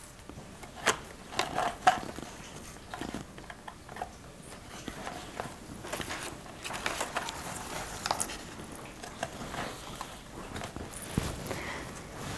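Quiet handling sounds of a braided ribbon being laid and pressed along the rim of a floral-foam-filled box: rustling and crinkling with scattered small clicks.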